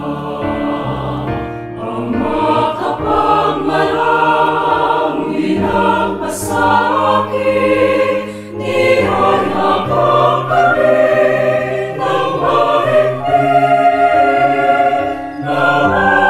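Mixed choir of men's and women's voices singing a Tagalog Christian worship song, a prayer to God the Father, in sustained phrases that swell louder about two seconds in.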